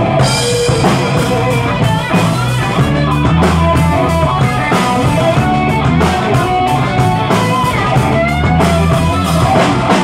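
Live blues-rock band playing an instrumental passage between sung verses: electric guitars over a drum kit keeping a steady beat.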